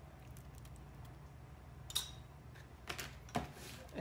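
Faint light taps and clicks of a metal spoon spreading minced garlic in a crock pot and of jars being handled, with a few sharper clicks about two seconds in and near the end, over a low steady hum.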